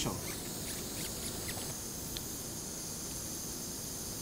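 Low steady hiss of room noise with a few faint short ticks.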